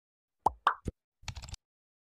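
Intro-animation sound effects: three quick pops, each with a brief pitch to it, in the first second, then a short rattle of small clicks.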